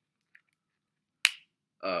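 A single sharp snap a little over a second in, as the soft iPhone case pops over a corner of the phone, after a couple of faint clicks of the case being worked on.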